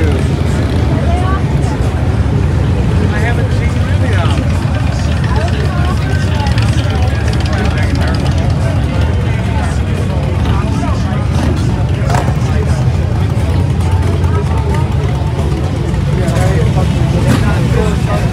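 Motorcycle engines running, a steady low rumble from bikes riding past and idling along a crowded street, with people talking around them.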